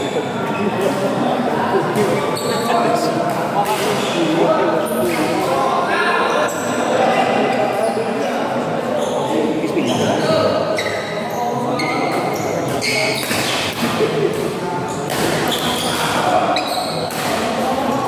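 Badminton rally: rackets hitting the shuttlecock with repeated sharp smacks at an irregular pace, echoing in a large indoor hall.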